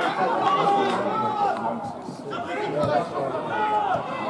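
Several voices talking and calling out at once, the overlapping chatter of players and spectators around a football pitch.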